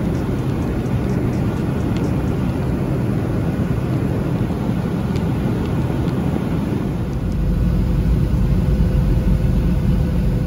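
Jet airliner cabin noise heard from a passenger seat during the descent: a steady low rumble and rush of engines and airflow, growing a little louder about three-quarters of the way through.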